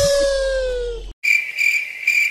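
A held note fades out, then after a brief silence a cricket chirping starts: a high, even chirp pulsing about three times a second, the comedy sound effect for an awkward pause.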